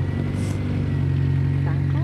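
A motor vehicle's engine running steadily close by: a low, even hum that swells just before the start and holds, with a child's voice faintly between words.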